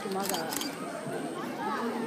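Spectators chattering in overlapping, indistinct voices, with two sharp camera shutter clicks about a quarter and a half second in.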